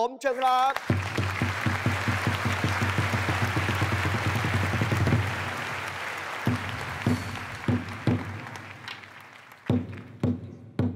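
Audience applauding over a rapid roll on a large Thai barrel drum. After about five seconds the roll stops and the applause fades, and the drum goes on with single beats about half a second apart.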